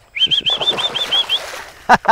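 Water splashing in a stock-tank pool as a dog scrambles out, with a bird's quick run of about eight high chirps over the first second and a half.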